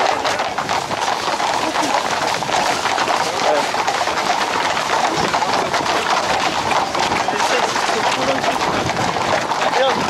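Camargue horses' hooves clip-clopping on a paved road as a herd moves along at a walk and trot, mixed with the voices and shouts of a crowd close around them.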